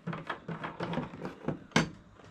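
A plastic screw plug being unscrewed from a plastic jerry can's outlet with the back end of an adjustable wrench: small clicks and scrapes of plastic and metal handling, with one sharp knock near the end.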